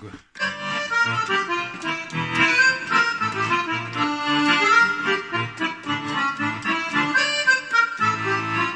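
Roland FR-4x digital button accordion (bayan) playing the instrumental opening of a song in the musette register. Sustained chords under a melody start about a third of a second in.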